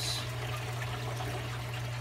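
Water from the tank's overflows trickling and splashing steadily into a reef aquarium sump, with a steady low hum underneath.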